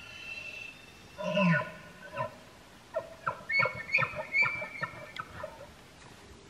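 Bull elk bugling: a high whistled note, then a loud falling call about a second in, followed by a run of about a dozen short grunting chuckles.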